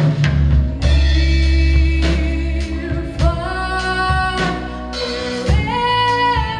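A live band playing a ballad: a female singer holding long notes that step upward, over keyboards, bass and a drum kit keeping a steady beat.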